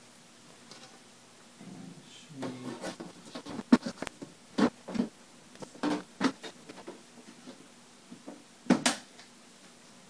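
Aluminium side panel of a 2008 Mac Pro tower being fitted back onto the case: metal scraping and rubbing with a series of sharp clicks and knocks, the loudest a little under four seconds in and another near the end. It takes some working to seat: harder than expected.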